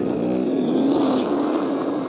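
A man imitating a private jet with his mouth: a steady, breathy whoosh with a low hum under it, held for about two seconds and then cut off.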